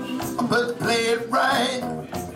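Telecaster-style electric guitar playing a blues phrase, with notes that bend and change in the second half.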